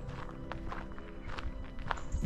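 Footsteps on a dirt towpath, several steps at an uneven pace, over faint steady background music.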